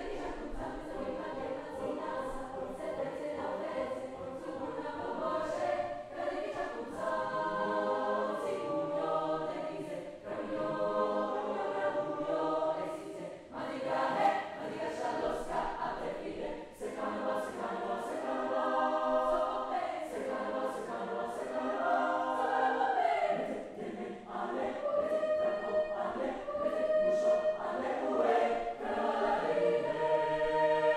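Mixed choir of young men and women singing together, growing louder toward the end.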